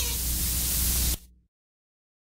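Steady hiss with a low mains hum under it, the noise floor of the recording after the song has finished. It cuts off suddenly a little over a second in, leaving dead silence as the recording ends.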